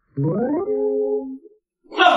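A short whining call that rises steeply in pitch, then holds steady for about a second.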